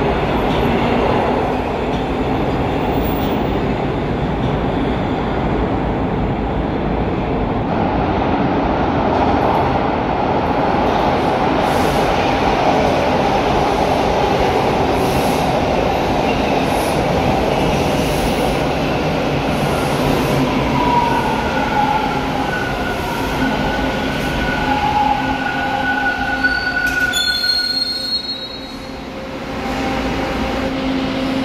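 Toronto Transit Commission T1 subway trains moving along a station platform: a loud, steady rumble of steel wheels on the track. In the second half, high-pitched wheel squeals rise and fade several times.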